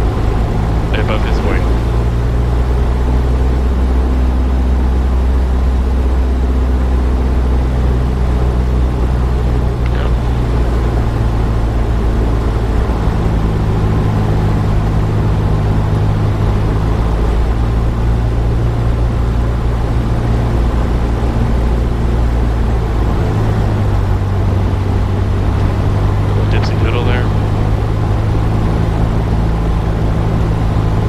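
A Cessna 172SP's four-cylinder Lycoming engine droning steadily in the cabin on final approach, its pitch shifting down and up a few times as power is adjusted. Brief high chirps sound near the start and again near the end.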